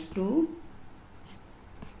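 A stylus writing on a tablet: faint scratching strokes and light taps as the figures are written.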